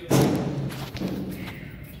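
A dull thump right at the start, fading out over about a second, with a fainter knock about a second in.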